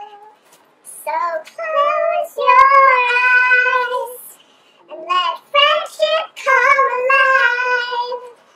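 A child's voice singing a song unaccompanied, in short phrases with long held notes. It breaks off for about a second at the start and briefly around four and a half seconds in.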